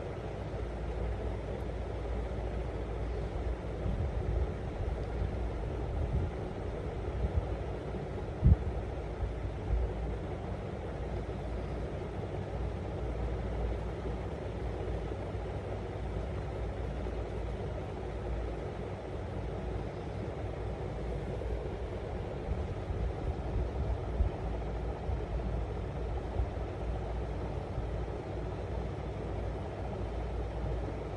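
Steady low rumbling background noise with a few soft thumps, the sharpest about eight seconds in.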